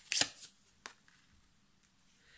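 A tarot card drawn from the deck and laid onto the spread: a short papery swish about a fifth of a second in, then one sharp tap a little under a second in.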